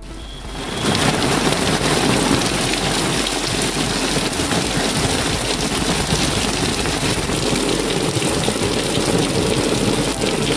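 Heavy rain falling, a loud steady hiss of rain on the ground that sets in about a second in.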